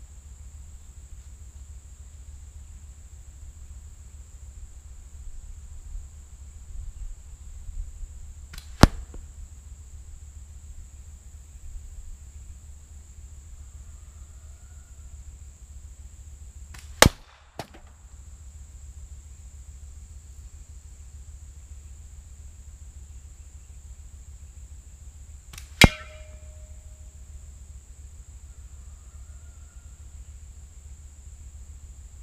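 Three sharp impacts, several seconds apart, of 9.5 mm steel balls shot from a slingshot and striking at the targets. The third hits an unopened aluminium drink can with a short ringing tone. A steady high insect buzz runs underneath.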